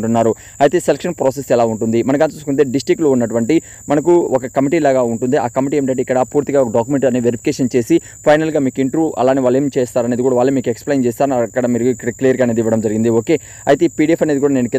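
A man's voice talking continuously, with a thin steady high-pitched whine running underneath.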